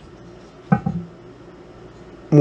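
A single clunk of cast iron skillets knocking together about three quarters of a second in, with a brief metallic ring.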